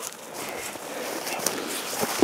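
Footsteps rustling and crunching through low heath brush and patches of snow, with a few faint irregular clicks.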